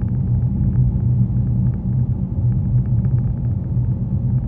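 Car interior noise while driving at a steady speed: a steady low rumble of engine and tyres on the road, with faint light ticks above it.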